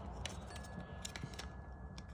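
Faint, scattered light clicks and rattles of a plastic wiring-harness connector and its corrugated loom being handled and fitted onto a sensor on the engine's water pump.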